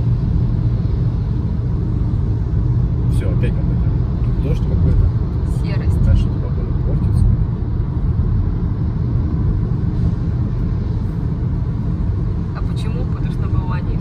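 Steady low rumble of a car's road noise heard from inside the cabin, tyres running on wet pavement, with a few faint short sounds over it.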